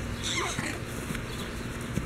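A young girl's high-pitched squeal, falling in pitch, about half a second in, as she runs in play.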